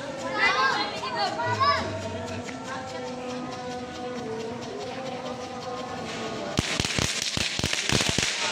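Ground firework burning, then, from about six and a half seconds in, a rapid run of sharp crackles over a hiss as it sprays sparks.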